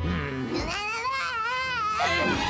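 A cartoon kitten character's voice wailing: one long, wavering, cat-like cry that starts about half a second in.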